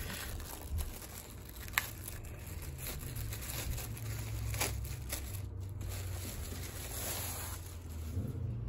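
Clear plastic poly bag crinkling and rustling as a T-shirt is worked out of it by hand, with a couple of sharper crackles.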